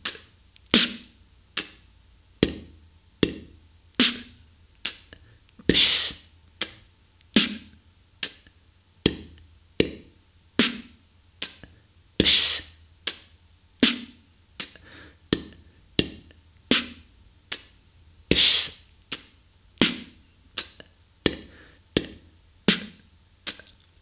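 Beatboxed 8-beat made with the tongue and breath: a dry kick with an S hiss, tongue hi-hats and an 808 snare with an F fricative, in the pattern ds t Tf t / d d Tf t. It is performed slowly, about one sound every 0.8 s, the pattern repeating about every six seconds, each loop opening with the long hissing kick.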